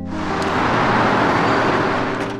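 A loud, even rushing noise that swells in and holds for about two and a half seconds, over quiet background music.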